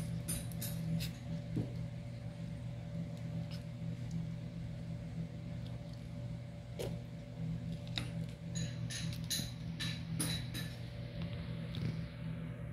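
A kitten eating fish from a plastic tub: scattered small sharp clicks and crunches of teeth on fish bones and the tub, coming faster for a couple of seconds late on, over a steady low hum.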